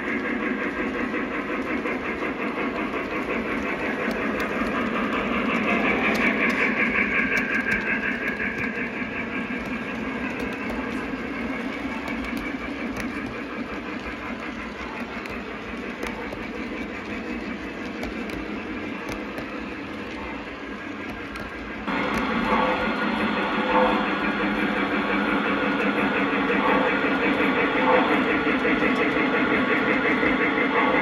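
O gauge three-rail model trains running on track, with a steady sound of rolling wheels and motors. About 22 seconds in, the sound switches suddenly to a louder, different train passing close by.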